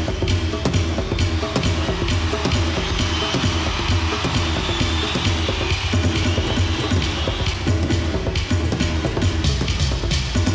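Electronic drum solo played on drum pads built into a stage vest and struck by hand: a dense run of rapid percussive hits over a steady low drone.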